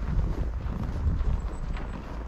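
Footsteps in snow at a walking pace, with wind rumbling on the microphone.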